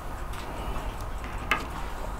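A page of a spiral-bound photo album being turned and laid down, with a few faint ticks and one sharp click about one and a half seconds in as the page settles.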